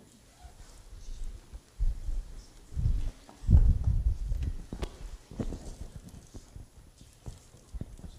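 Footsteps and knocks: a run of dull, low thumps, heaviest a few seconds in, followed by a few sharper single knocks.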